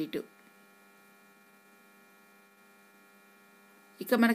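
Faint steady electrical hum, a set of unchanging tones: close to silence apart from the hum.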